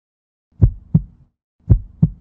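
Heartbeat sound effect: two low lub-dub double thumps, the first about half a second in and the second about a second later.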